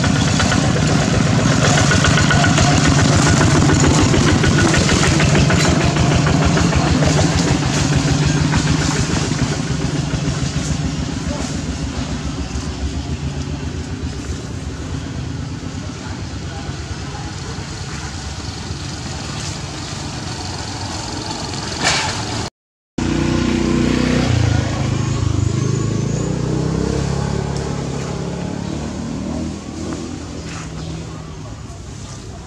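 An engine running steadily, with voices. The sound cuts out completely for a moment about two-thirds of the way through, then comes back with a changed, uneven low sound.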